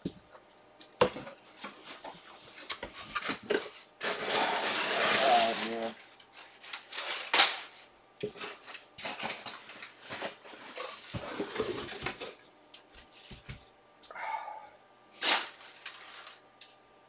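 A cardboard box being opened by hand: flaps and crumpled packing paper rustling and crinkling, with scattered clicks and knocks. A longer, louder rustle runs about four to six seconds in, and there is one sharp knock about halfway through.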